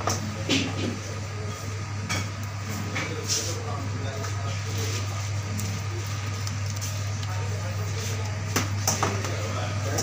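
Kitchen background: a steady low hum with indistinct voices in the background and a few sharp clinks of metal, as of steel cake pans on a steel worktable.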